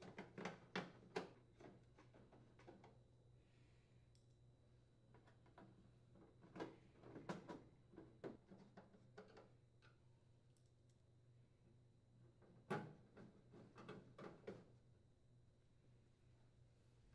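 Faint, scattered clicks of a hand Phillips screwdriver driving screws into a microwave's metal bottom panel, coming in three short spells.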